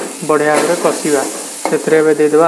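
Masala paste sizzling as it fries in an aluminium kadai, stirred with a spatula, under a voice talking over it.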